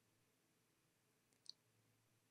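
Near silence: quiet room tone, with one short, faint click about one and a half seconds in.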